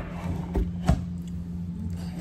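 A few short knocks, two of them about half a second and a second in, from fruit being handled and set down on a table, over a steady low hum.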